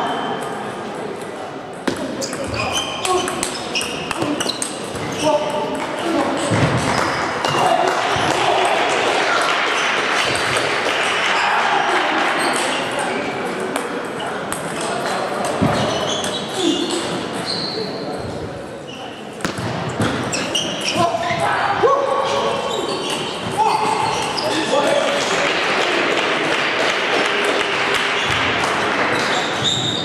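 Table tennis rallies: the celluloid ball clicking repeatedly off rubber-faced bats and the table top, with voices carrying through the hall.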